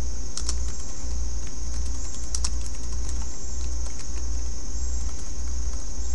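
Typing on a computer keyboard: faint, irregular keystrokes over a steady low hum and hiss.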